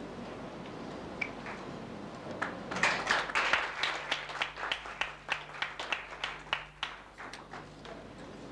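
Audience clapping as an award is handed over. The claps start about two and a half seconds in, are densest for the first second or so, then thin to scattered claps that stop just before the end.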